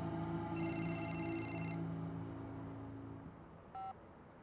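A mobile phone ringing: a high electronic tone chord sounds about half a second in and lasts just over a second, over soft sustained background music that fades out. Near the end a short, lower beep follows, typical of a phone being answered.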